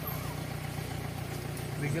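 An idling engine gives a steady low hum throughout, and a voice speaks one word at the very end.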